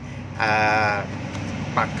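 A man's voice holding a drawn-out, level-pitched hesitation sound ('uhh') for about half a second, with a steady low background hum underneath. He speaks a syllable near the end.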